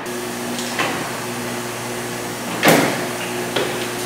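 Door of a Huebsch commercial front-load washer shut with a single loud thud about two-thirds of the way through, after a couple of light clicks. A steady machine hum runs underneath.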